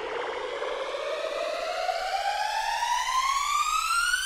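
Electronic siren-like riser effect of a DJ remix build-up: a single tone with overtones gliding steadily upward in pitch and slowly getting louder.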